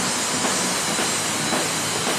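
Drum-kit cymbals ringing in a dense, steady wash of hiss, with faint drum hits under it.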